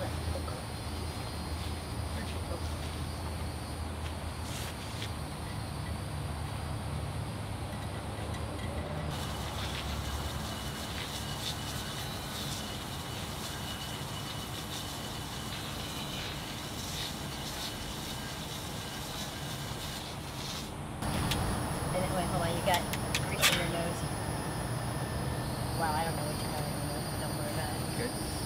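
Steady low outdoor background rumble with faint scattered clicks. It changes abruptly about nine seconds in, and again about twenty-one seconds in, when it becomes louder.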